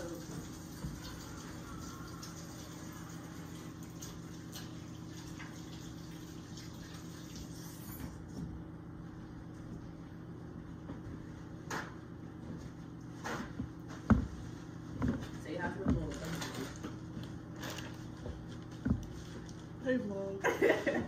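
Kitchen tap running into the sink as hands are washed, shut off about eight seconds in, followed by scattered knocks and clatter from handling things on the counter, over a steady appliance hum.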